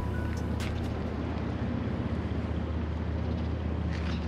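A steady low hum under a faint outdoor background haze.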